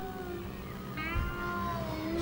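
A quiet lull in a slow live ballad: a held chord from the band fades, and about a second in a high, wavering sustained note from the backing singers comes in.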